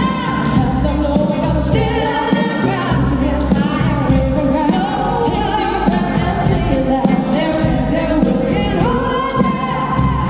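Live band music: a woman singing lead over drums and bass guitar, with regular drum and cymbal hits. She holds a long note near the end.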